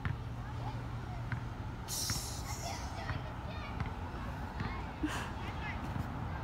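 Outdoor ambience: a steady low hum with faint, distant voices, and a brief hiss about two seconds in.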